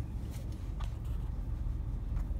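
Low, steady rumble of a manual car's engine running, heard inside the cabin as the car creeps to a stop. A couple of faint clicks come within the first second.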